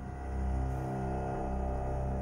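Background soundtrack music: a low steady drone with several held notes layered above it.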